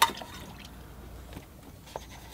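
Faint water sounds of a paintbrush being wetted in a water container, with a light tap near the end.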